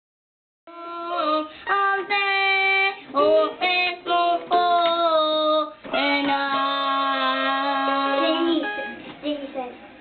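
A young girl singing into a toy microphone in long held notes, with short breaks between phrases, while playing notes on a toy electronic piano keyboard. The singing starts about a second in and trails off near the end.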